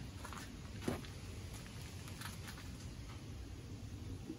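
A few soft clicks and taps of small metal parts and tools being handled, the most distinct one about a second in, over a low steady background hiss.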